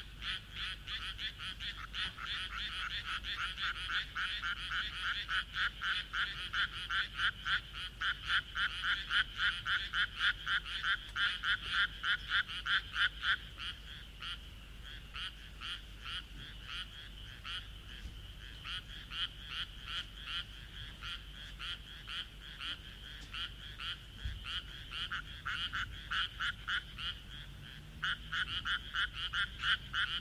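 A chorus of frogs calling in rapid, evenly pulsed croaks, about three a second, that build up to their loudest in the first half, ease off, and rise again near the end.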